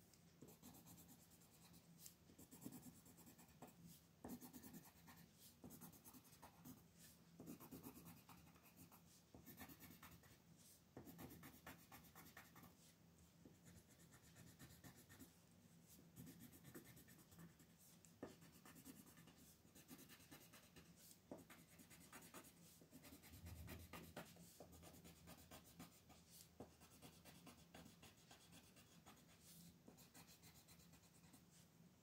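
Colored pencil shading on paper: faint, rapid scratching strokes in short runs with brief pauses between them.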